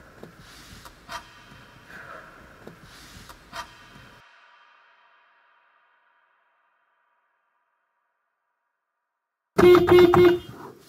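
Background music of sustained, ringing guitar-like tones with a few sharp plucks, fading away about four to five seconds in. After a stretch of silence, a car horn starts honking loudly just before the end.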